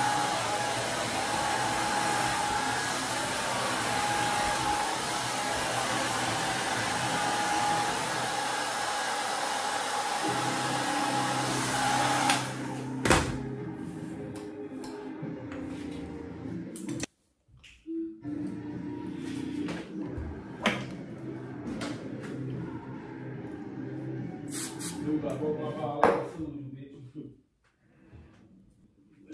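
A handheld hair dryer runs steadily, an even loud rush with a steady whine, and cuts off about twelve seconds in. A sharp click follows, then quieter, mixed sounds.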